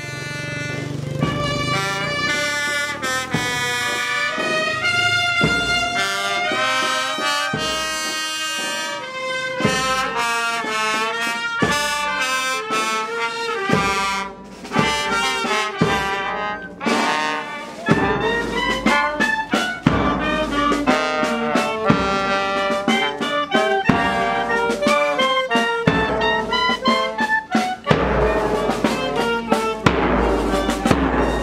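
Brass marching band playing a melody on trumpets and trombones, with bass drum beats coming in more strongly in the second half.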